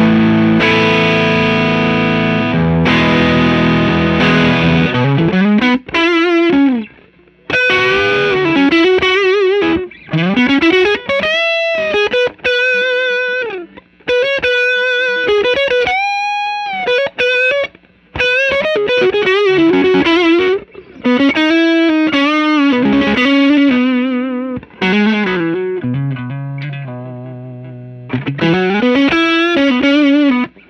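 Electric guitar, a Fender Custom Shop '60 Stratocaster Relic, played through a JAM Pedals TubeDreamer 808-style overdrive into a Fender '65 Twin Reverb, with the pedal's toggle switch set to its other gain mode. It opens with strummed chords for about five seconds, then moves to single-note lead phrases with string bends and vibrato, broken by short pauses.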